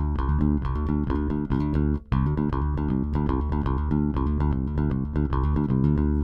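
Electric bass played dry, with both the SansAmp Bass Driver and the Zoom MS-60B switched off: a short phrase of plucked notes repeated on the third string. The midrange is left fully intact. There is a brief break about two seconds in.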